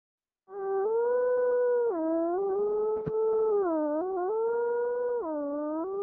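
A long, unbroken howl that starts about half a second in. It holds a steady pitch, dips lower and rises back again several times, with one sharp click about three seconds in.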